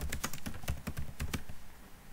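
Computer keyboard typing: a quick run of about ten keystrokes over a second and a half, spelling out a short terminal command ("git status").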